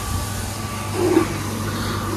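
A steady low rumble with a faint thin tone over it, and a brief faint sound about a second in.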